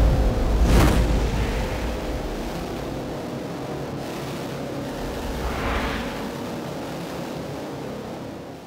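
Cinematic trailer sound design: a single booming impact hit about a second in, trailing off into a low rumbling drone with a faint steady tone. A whooshing swell rises and falls near six seconds.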